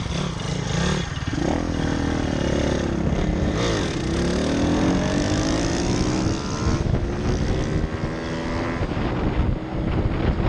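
Small single-cylinder four-stroke pit bike engines under way, revving up through the gears: the engine pitch climbs in runs and drops back at gear changes, with a sharp break about seven seconds in. Wind rushes over the microphone.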